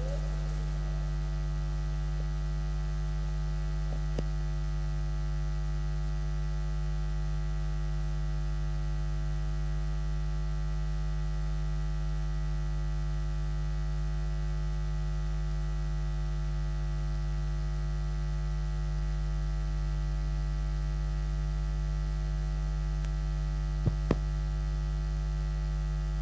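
Steady electrical mains hum with a stack of overtones, unchanging in level, from the sound system's audio feed. There are two faint clicks near the end.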